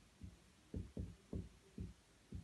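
Marker pen writing on a whiteboard: a run of about five soft, low knocks as the strokes of the letters are drawn, each a fraction of a second apart.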